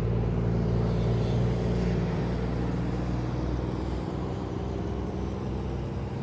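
Steady low motor hum with a light background rumble, easing off a little about four seconds in.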